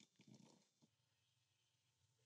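Near silence: a gap between narrated lines, with only a faint noise floor.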